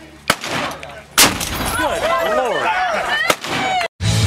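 A 37 mm Bofors anti-tank gun fires one loud shot about a second in. A smaller sharp report comes just before it and another near the end, and people's voices rise after the shot.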